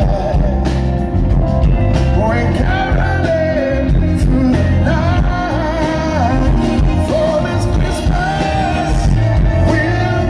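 Live band performance: a male lead singer's voice over a full band with keyboards and drums, loud and continuous, heard from among the audience.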